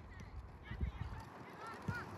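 Birds honking in short calls several times, with faint voices in the background and two low thumps, about a second in and near the end.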